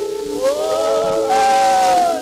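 Pre-WWI acoustic recording of a tamburica orchestra, heard through the hiss of an old 78 rpm record. The melody glides upward about half a second in and then holds one long high note.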